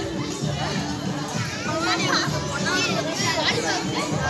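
Many children's voices chattering and calling out over music with steady held notes.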